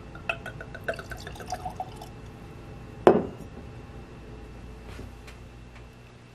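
Whisky glugging from a bottle into a glass tasting glass, a quick run of glugs over the first two seconds. One loud knock follows about three seconds in.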